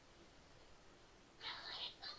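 Near silence, then a faint, whispery voice for about half a second near the end.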